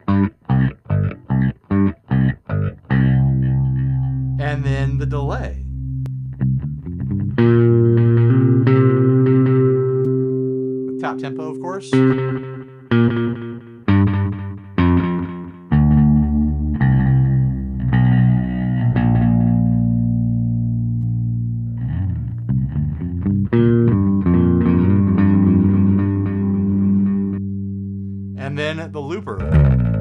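Electric bass played through a Line 6 POD Express Bass with flanger and overdrive: a quick run of short staccato notes, then long held notes with a gritty edge and a sweeping, swirling flange.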